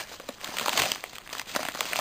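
Yellow padded paper mailing envelope being handled and crinkled: an irregular papery rustling and crackling that grows louder near the end.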